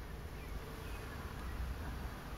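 Steady faint hum and hiss of background noise inside a car, with no distinct sounds.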